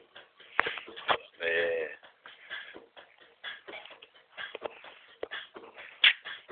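Scattered knocks and shuffling noises, with one short voiced sound of about half a second, about a second and a half in.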